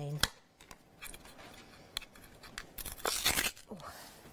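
A stiff, dry paintbrush scratching over a stencil in short strokes, with a few light clicks and a louder scrape about three seconds in. The bristles are crunchy, stiffened with old paint or glue.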